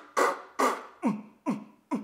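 A woman beatboxing with her hands cupped over her mouth: a steady rhythm of vocal drum sounds, about two beats a second, mixing hissing snare-like bursts with low booms that drop quickly in pitch.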